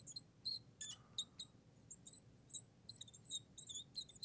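Marker squeaking on the glass of a lightboard as a word is written, in a quick, irregular run of short high-pitched squeaks.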